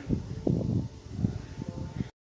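Handling noise around a plastic bowl of wet, cubed beef liver: soft, irregular rustling and a few light knocks as the hand leaves the bowl and it is moved.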